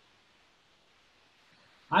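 Near silence: faint room hiss, until a man starts speaking near the end.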